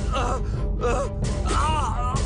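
A person's voice gasping in short, pitched cries about three times, over a steady low droning film score.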